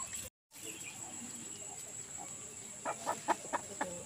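Chicken clucking: a quick run of about six short clucks in the last second, over a steady high-pitched whine.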